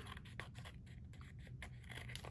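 Small scissors snipping through paper and card, a few faint, scattered snips.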